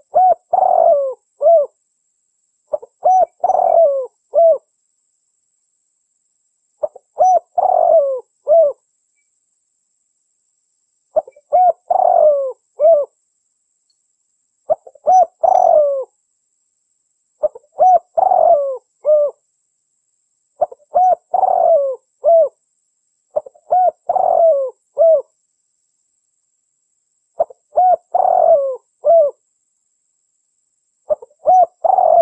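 Spotted dove cooing: about nine phrases, each a quick run of several rising-and-falling coos, repeated every three to four seconds with silence between.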